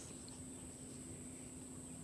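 Faint, steady high-pitched chorus of insects, with a faint low hum under most of it.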